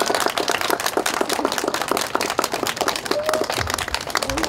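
A small crowd applauding: dense, irregular hand claps from many people at once, with a brief voice near the end.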